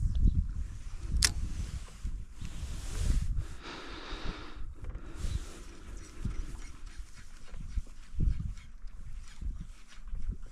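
Wind buffeting the microphone in uneven gusts, a low rumble with one sharp click about a second in.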